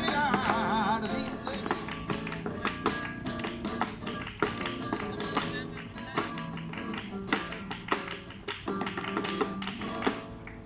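Live flamenco: a dancer's shoes strike rapid footwork on a wooden board, with hand-clapping and a nylon-string Spanish guitar. A singer holds a wavering, ornamented note near the start.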